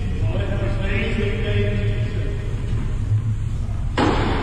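Steady low rumble of hall background noise, with indistinct distant voices in the first couple of seconds. A sudden louder noise starts right at the very end.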